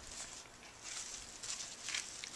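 Faint rustling of a plastic hydration bladder being handled and hooked into a harness, with a few light ticks.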